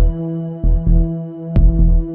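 Electronic music: a steady synthesizer drone under a low double thump like a heartbeat, repeating a little faster than once a second.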